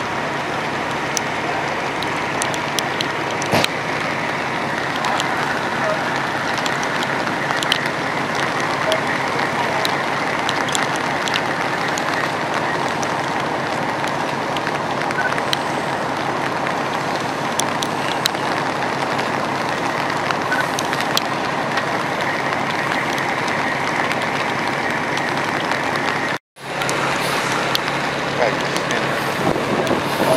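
Steady noise of a working structure fire and the fire apparatus around it: a constant rumble and hiss with scattered sharp crackles. A brief dropout breaks it near the end.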